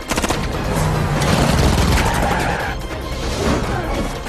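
Rapid gunfire, densest in the first half-second, with scattered later shots and impacts, mixed over a film score.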